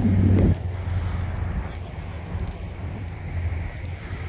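Wind buffeting the microphone: a loud gust in the first half second, then a steadier low rumble.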